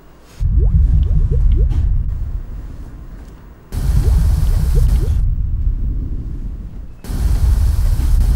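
Suspense sound effects: three deep rumbling booms about three seconds apart, each fading out, with faint rising tones over the first two.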